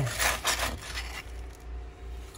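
Gravel and loose dirt scraped and shifted by a gloved hand digging into a hole in a broken concrete floor: a few short scrapes in the first second, then fainter.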